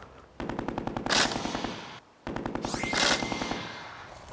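Laser tag gun firing electronic machine-gun sound in two rapid bursts of evenly spaced shots, each about a second and a half long, with a short break between them. A swishing sweep runs through each burst.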